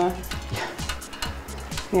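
Light clicking and clinking of hangers and costume pieces being handled on a metal clothes rail.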